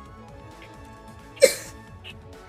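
A man's short shouted scream, from a TV clip played through a tablet speaker, bursts out about one and a half seconds in with a falling pitch, over low background music.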